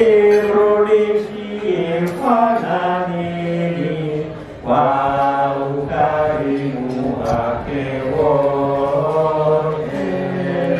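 Men's voices singing a slow, chant-like song into microphones, holding long sustained notes and moving from note to note.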